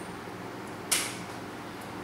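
A coin toss: one sharp smack about a second in as the tossed coin comes down, over faint room tone.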